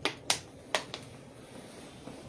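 Four sharp clicks or taps in quick succession during the first second, the second one loudest.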